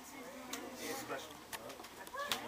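Indistinct background chatter of voices, with a couple of light clicks about half a second and a second and a half in.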